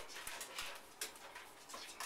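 Faint sounds from a dog straining over a bathtub rim to reach a toy, with a few soft clicks in the first second.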